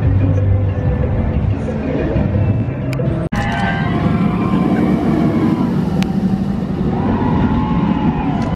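Mako steel hyper coaster train rumbling along its track, a steady dense roar, with a short break in the sound about three seconds in.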